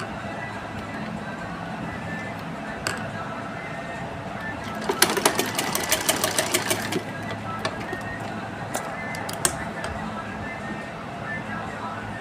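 Domestic sewing machine stitching a seam in cotton fabric: a fast run of rapid needle strokes about halfway through, with a few single clicks before and after.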